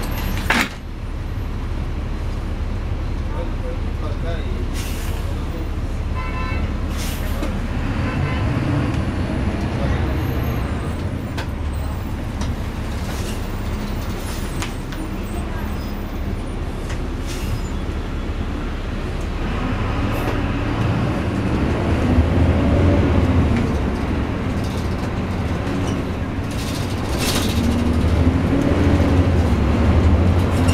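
Diesel engine and drivetrain of a 2009 NABI 416.15 suburban transit bus, heard from the front seat inside the cabin as the bus pulls away from a stop and drives on. The engine note swells twice as it accelerates. A sharp knock just after the start comes as the front doors close.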